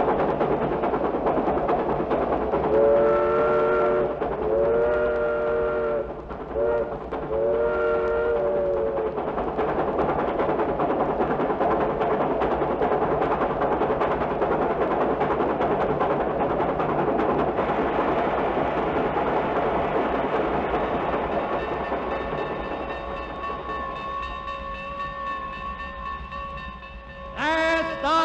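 Train sound effect played from a vinyl record: a train runs with steady mechanical noise, and a few seconds in its multi-tone whistle sounds four blasts, the third one short. The running noise fades toward the end.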